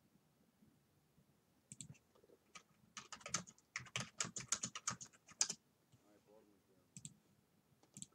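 Faint typing on a computer keyboard: a quick run of key clicks from about three seconds in until about five and a half seconds, with a few single clicks before and after.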